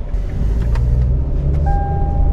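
Hyundai car's engine running and pulling away, heard from inside the cabin as a steady low rumble that grows louder a moment in. Near the end a steady electronic beep sounds.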